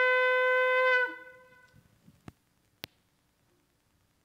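A shofar's long held blast ends about a second in with a brief downward slide, its echo dying away in the room. Two small clicks follow about half a second apart.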